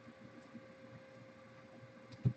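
Near silence: a faint steady hum, with a few soft ticks of trading cards being thumbed through by hand.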